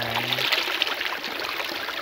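Shallow stream of water running over rocks, a steady rush.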